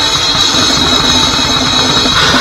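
Live grindcore band playing loud: fast drumming on a full drum kit under distorted guitar, heard from close behind the drums.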